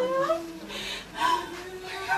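Mourners' voices wailing and crying in short rising and falling cries, over a steady held sung note.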